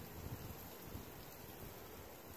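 Faint, steady outdoor background hiss with no distinct sound events.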